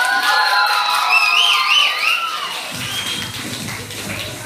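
A group of children's voices calling out together in one long sustained cry, a high voice wavering above the rest, dying away after about two and a half seconds; then shuffling and light taps.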